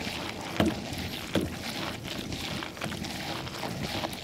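Stand-up paddleboard paddle strokes in canal water: splashing and dripping from the blade, with two louder strokes about half a second and a second and a half in.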